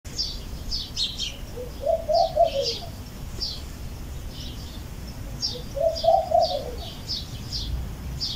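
Small birds chirping over and over, with a dove cooing twice: one phrase about one and a half seconds in and another about five and a half seconds in.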